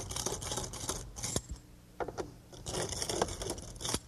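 Screwdriver turning the adjustment screws of an aluminum door threshold, a scratchy grinding of blade in screw with a few clicks, in two spells with a short pause between. It is setting the threshold's height against the bottom of the door.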